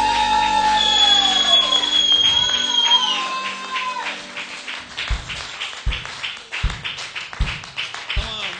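A worship band's song winds down: voices hold a long note that fades out over the first few seconds. Then a steady low drum beat comes in, a little more than one beat a second, with lighter ticks between the beats.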